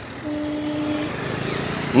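A motor engine running steadily in the background, with a steady humming tone that sounds from about a quarter second in for under a second.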